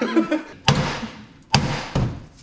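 Two sharp, heavy knocks about a second apart, each ringing out briefly.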